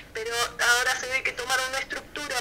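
Speech only: a woman talking in Spanish, in a continuous spoken explanation.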